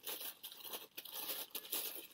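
Tissue paper rustling and crinkling as it is pulled and unwrapped by hand from around an ornament: an irregular run of soft crackles that rises and falls.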